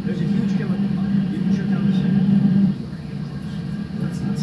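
Indistinct voices over a steady low hum, the hum dropping in level about three quarters of the way through.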